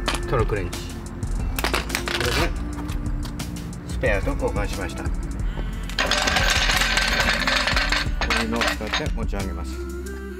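Snap-on cordless impact wrench hammering on wheel lug nuts, with a short burst about two seconds in and a longer run from about six to eight seconds, over background music.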